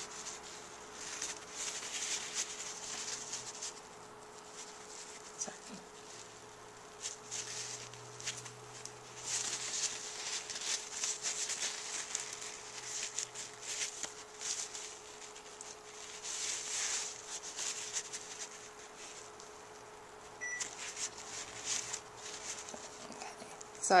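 Paper towel rubbed and wiped over the fingers to clear off excess nail polish: a run of irregular, soft scrubbing rustles with short pauses between, over a faint steady hum.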